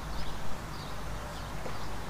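Open-air ambience with wind rumbling on the microphone and small birds chirping every so often.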